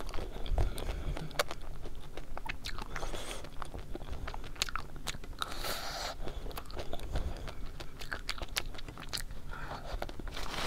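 Close-miked biting and chewing of a chocolate-coated ice cream, the hard chocolate shell cracking in scattered sharp crunches between softer mouth sounds.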